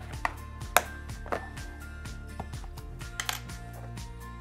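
A small accessory box and its contents being handled on a table, making a few sharp clicks and knocks. The loudest comes about a second in, and a quick pair follows just after three seconds. Background music with a steady beat plays underneath.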